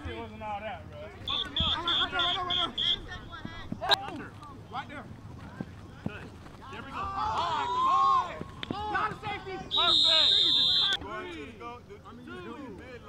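Men's voices calling and shouting across a flag football field. A run of six quick, shrill high pips comes early on, and near the end a loud, steady, shrill tone lasts about a second.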